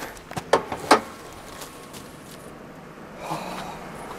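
Two sharp clicks in the first second, then faint handling noise: a car's hood being unlatched and lifted.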